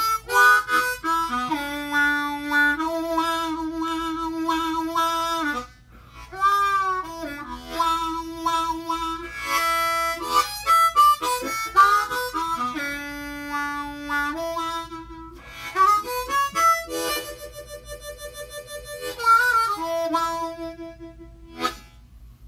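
Hohner diatonic harmonica in the key of A being played: phrases of held chords and single notes with bent notes that slide in pitch, broken by two short pauses. Late on, a held chord gets a fast fluttering hand-cupped warble before the playing stops near the end.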